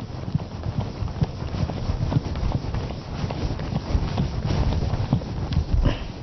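Whiteboard eraser rubbing across the board in quick, irregular back-and-forth strokes, each stroke a short scrub or knock.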